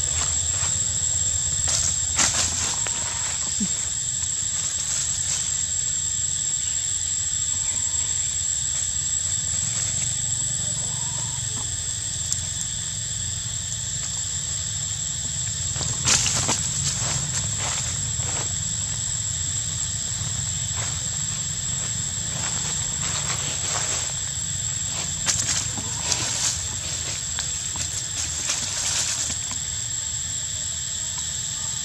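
Forest ambience dominated by a steady high-pitched insect drone over a low rumble. Brief clicks and rustles come about two seconds in, around the middle, and several times near the end.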